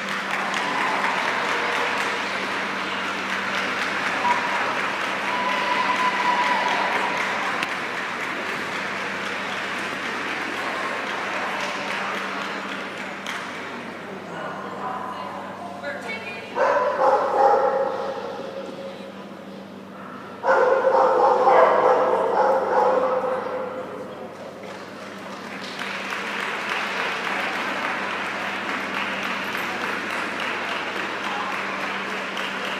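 Background chatter of people in a large hall over a steady low hum, with a dog vocalising in two loud bursts a little past halfway.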